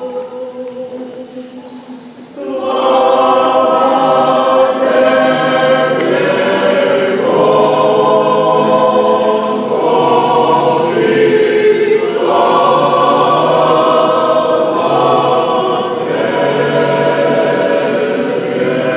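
Mixed church choir singing unaccompanied Orthodox chant in full chords, the response that follows the Gospel reading in the Orthodox liturgy. Quieter held singing comes first, then the full choir comes in loudly about two seconds in and sings on in long held chords.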